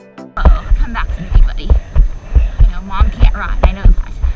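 A horse's hoofbeats on arena sand, heard through a helmet-mounted action camera: a steady run of dull thumps about four a second with wind noise on the microphone. It follows a music track that cuts off about a third of a second in.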